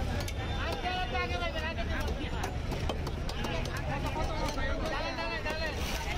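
Voices of several people talking over a steady low rumble of outdoor market background noise.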